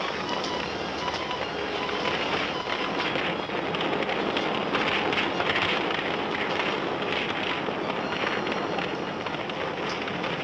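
A burning timber cabin: fire crackling steadily, a dense run of irregular snaps over a continuous rushing noise.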